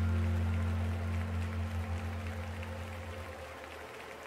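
A live band's final sustained chord ringing out and fading away, its low bass note dying off over a few seconds, with a faint noisy haze underneath.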